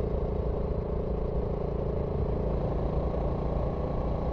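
BSA Gold Star 650's Rotax-derived 652 cc single-cylinder engine running at a steady motorway cruise, heard on board, its firing strokes keeping an even beat at constant pitch.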